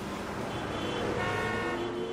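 Sound-design tones of an animated neon logo sting: several steady, horn-like held tones, with one tone gliding slowly upward in the second half.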